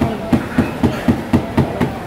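A quick, even series of about seven sharp knocks, about four a second, like hammering or chopping, over a background of people's voices.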